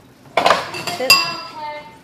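Kitchen utensils and dishes clinking as they are handled on a counter: a clatter about a third of a second in, then a sharp clink about a second in that rings on briefly.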